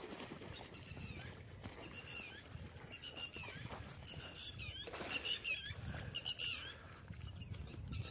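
High-pitched animal chirping calls in short bursts, repeating about every second, over a faint low rumble.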